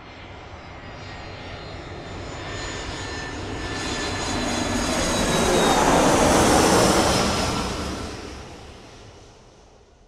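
Jet airliner flyby: the engine noise swells to a peak about six to seven seconds in and then fades away, with a high whine that drops slightly in pitch as it passes.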